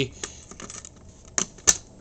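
Light clicks and scrapes of a reset key being worked into the lock of a Simplex T-bar fire alarm pull station, with two sharper clicks about a second and a half in.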